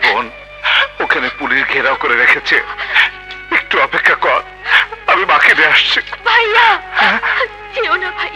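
Film soundtrack: background music with a voice over it, wavering and breaking throughout.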